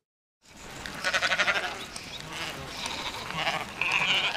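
A large flock of Icelandic sheep bleating, several voices overlapping, as they are driven into the round-up fold. It comes in suddenly about half a second in.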